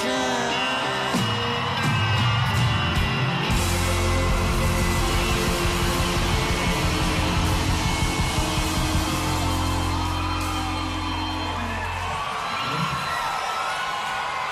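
Live rock band of drums, bass guitar and keyboards playing the end of a song, closing on a long held low chord that stops about twelve seconds in. Crowd cheering and whoops follow.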